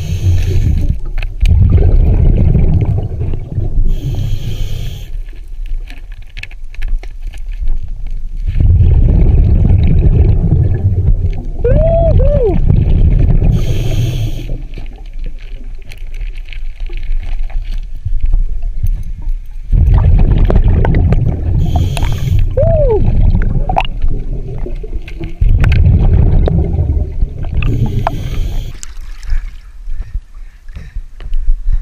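Scuba diver breathing through a regulator underwater: several long, low bubbling rumbles of exhaled bubbles alternate with short hissing inhalations. A brief squeaky gliding tone sounds during two of the exhalations.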